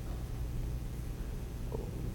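Steady low hum of room background noise, heard during a pause in speech, with a faint short sound near the end.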